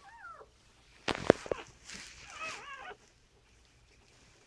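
Newborn poodle puppy crying: a short falling squeal at the start and a wavering squeal about two and a half seconds in. A cluster of sharp knocks just after a second in is the loudest sound.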